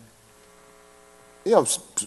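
A faint, steady electrical hum of several even tones fills a pause in the speech, before a man's voice comes back about a second and a half in.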